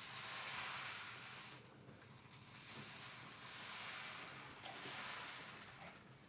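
Soft rustling hiss of a brown paper bag of seeds being handled, in two swells of a couple of seconds each.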